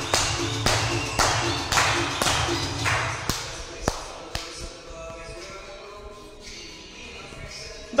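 Dancers clapping hands in time with dance music, about two claps a second; the claps stop about four seconds in and the music carries on quieter.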